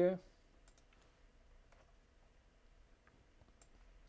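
A handful of faint, scattered computer mouse clicks over low room noise: a couple under a second in, one near two seconds, one near the end.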